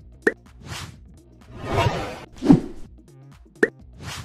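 Animated intro sound effects over music: a short sharp pop about a third of a second in and another near the end, with swooshes between them.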